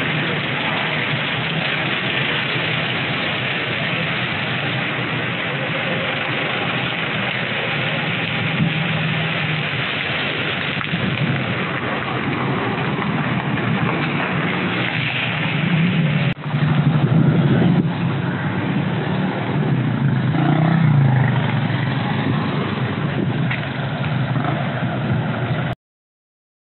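Steady rushing wind noise on the microphone, with a low rumble and louder gusts about two-thirds of the way through.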